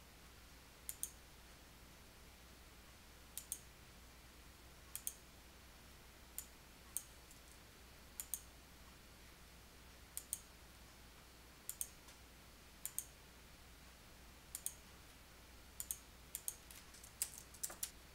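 Computer mouse clicks, mostly in quick press-and-release pairs one to two seconds apart, coming closer together near the end, over a faint low hum.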